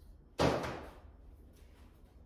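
A piston set down on a steel workbench: one sharp knock about half a second in, dying away within half a second.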